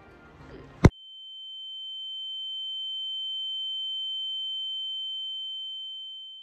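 A sharp click about a second in, then a steady, high-pitched electronic beep tone that swells in over a couple of seconds and holds on one pitch.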